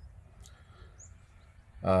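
A quiet lull of faint outdoor background, with a single short, high bird chirp about a second in.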